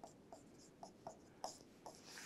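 Faint short strokes of a pen writing on a board: about six quick scratches spread through two seconds, as each symbol is written.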